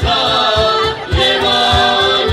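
Mixed choir of men and women singing a Serbian ethno-folk song in held harmony, over a steady cajón beat of about four strokes a second. The singing breaks off briefly about a second in, then picks up again.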